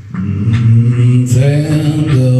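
A deep male voice sings low, held wordless notes, rising a step in pitch near the end.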